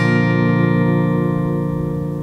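A G major chord shape, capoed at the third fret, strummed once on a Breedlove steel-string acoustic guitar and left ringing, slowly fading.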